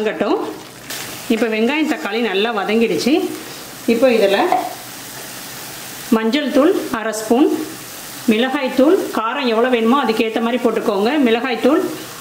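Onion-tomato paste frying in oil in a stainless-steel pan, a steady sizzle, stirred and scraped with a wooden spatula. A voice talks over it in several stretches.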